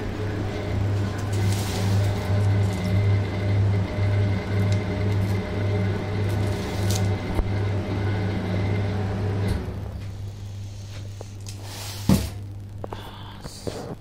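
Walk-in chiller's refrigeration unit running with a steady low electric hum, which drops to a much quieter hum about two-thirds of the way through. A single knock near the end.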